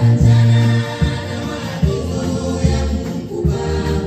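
Amplified gospel singing: a woman leads on a microphone and a choir of voices sings with her, over a sustained bass line.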